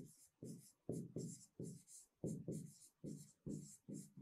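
Faint handwriting strokes of a stylus on a writing tablet: about ten short scratchy strokes, two to three a second, as a sentence is written out letter by letter.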